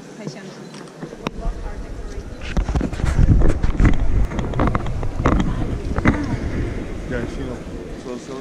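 Rumbling handling and wind noise on the camera's microphone with a few knocks as the camera is swung around, loudest about three to four seconds in, with people's voices in the background.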